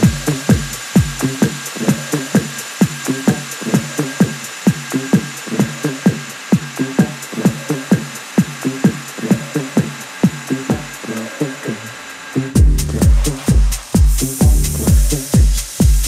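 Four-on-the-floor house/techno from a DJ set, kick drum pulsing about twice a second with the deep bass filtered out. The kick fades briefly, then the full kick and bass drop back in about four-fifths of the way through, with a bright hiss rising near the end.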